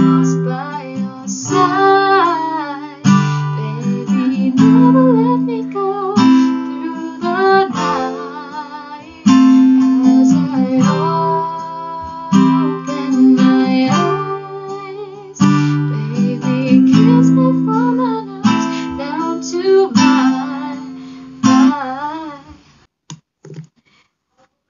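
Acoustic guitar with a capo strummed in a steady up-down pattern through the chorus chords, with a woman singing the melody along with it. The strumming and singing die away about two seconds before the end.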